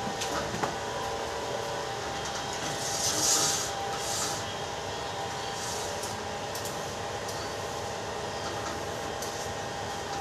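A steady mechanical hum of running room equipment, with two short hissing bursts about three and four seconds in and a few light clicks near the start, as window cleaning goes on.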